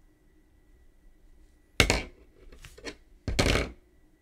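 A crochet hook being put down on a table amid yarn handling: a sharp knock about two seconds in, a few small clicks, then a longer knock near the end.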